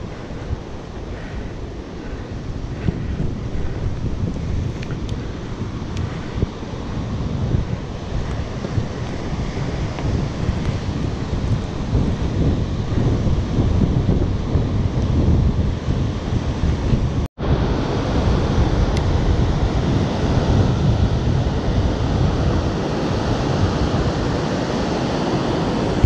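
Wind buffeting the microphone of a bicycle-mounted GoPro, a dense low rumble, with sea surf washing beneath it. The sound cuts out for an instant about two-thirds of the way through.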